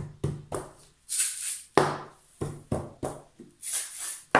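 Homemade mini bongo shakers (tin cans with balloon skins stretched over them and rice inside) played as a rhythm: quick hand taps on the balloon skins, with a rattle of rice from a shaken tin about a second in and again near the end.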